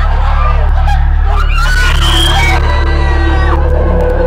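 Frightened shrieks and yelps from a group of young people, with one louder outburst about halfway through, over a loud, steady, low droning background soundtrack.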